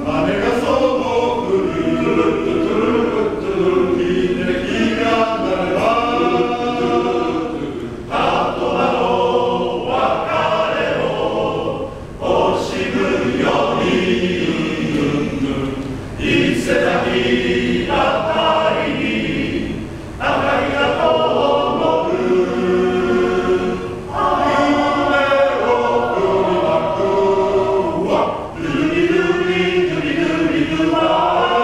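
Male-voice choir singing in harmony, the phrases separated by brief dips about every four seconds.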